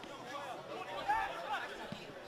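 Faint, distant voices of players calling out on the pitch during live play, over low field ambience.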